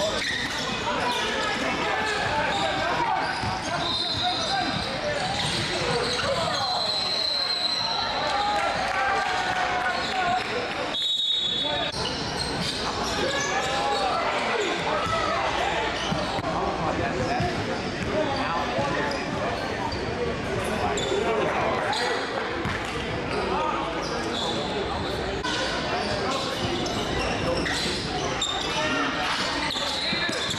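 Live basketball game audio in a large, echoing gym: balls bouncing on the court, with players and spectators talking and calling out over each other. The sound drops out briefly about eleven seconds in.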